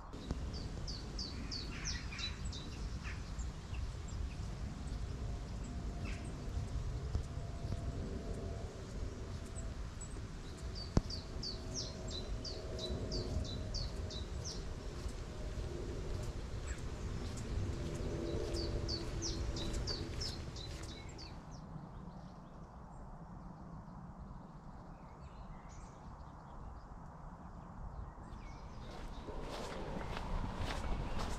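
A songbird singing three short phrases of quick, high repeated notes, each about two to three seconds long: near the start, about twelve seconds in, and about eighteen seconds in. A low steady outdoor rumble lies underneath and eases off after about twenty seconds, and there is a single sharp click about eleven seconds in.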